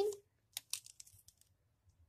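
A few short, faint scratches of a pen on a paper sheet, drawing a tick mark, from about half a second in to just past a second.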